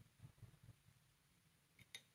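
Near silence: faint soft sounds of a paintbrush stirring watercolour paint in a palette well, with a light tick near the end.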